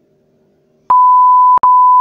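Loud electronic beep tone, one steady pitch, sounding twice back to back with a tiny break between, starting about a second in.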